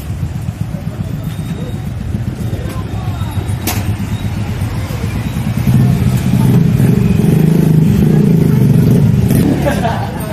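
Street traffic: a motor vehicle's engine rumbling, louder from about six seconds in and easing off just before the end, with one sharp knock a few seconds in.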